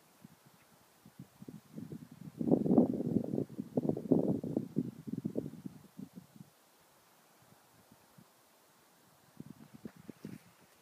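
Wind buffeting the camera's microphone in irregular gusts, loudest a couple of seconds in and dying away after about six seconds. A few footsteps on rocky ground start near the end.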